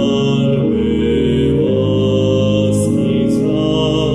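Electronic church organ playing a slow hymn harmonization in held, legato chords, with the bass notes changing about once a second.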